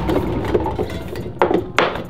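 Plastic bottles and containers shifting and clattering on a cabinet shelf as a hand rummages through them, with two sharp knocks near the end.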